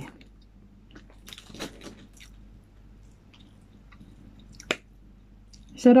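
A person chewing a mouthful of food: soft, quiet mouth sounds with a few small clicks, and one sharp click a little over a second before the end.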